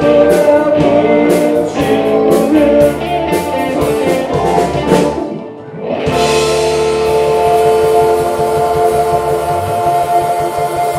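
Live electric blues-rock band, with electric guitars, keyboard, bass and drum kit, playing the closing bars of a song with a steady drum beat. The band breaks off briefly about five and a half seconds in, then comes back in on a long held final chord with ringing cymbals.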